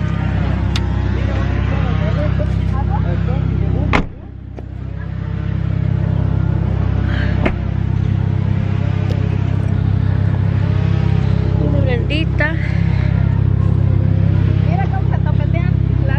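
A car engine idling close by, a steady low rumble, with people talking faintly over it. A sharp click comes about four seconds in; the rumble briefly drops there and builds back.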